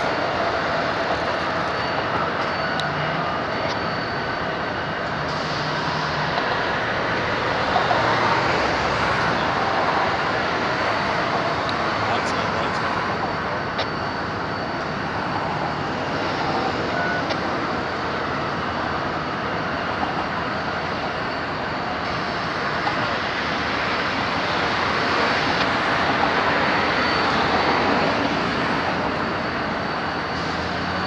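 Amtrak California Zephyr passenger train rolling slowly through a rail yard, heard from a distance as a steady rumble within a continuous wash of outdoor noise.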